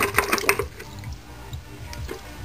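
A carburetor part being swished by hand in a bucket of cleaning fluid: a few short splashes in the first half second, then quieter sloshing.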